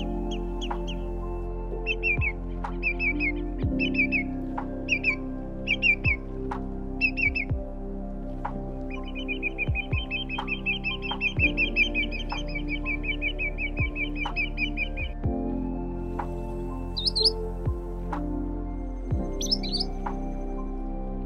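Bird calls over soft background music: a run of short repeated calls, then a fast even trill lasting about six seconds, then a few higher calls near the end.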